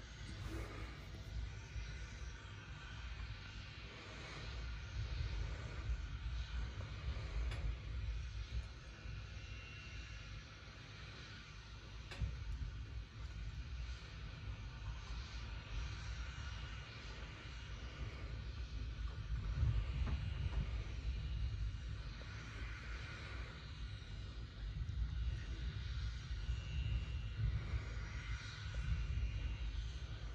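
Low, uneven rumble with faint hiss above it, played through a TV's speakers, swelling a little about two-thirds of the way through.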